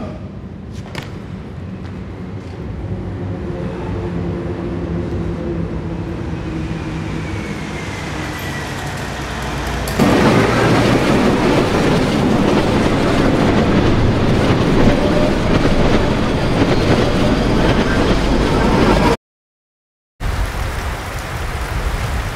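Low rumble with steady humming tones that builds for about ten seconds, then jumps suddenly to a loud, dense roar that cuts off abruptly near the end.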